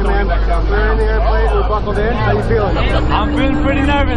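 Small jump plane's engine running steadily, heard from inside the cabin as a low drone, with several people chattering over it.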